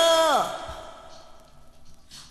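A song on a dance-music compilation ends: a held vocal note slides down in pitch and fades out within about half a second, leaving a quiet gap between tracks.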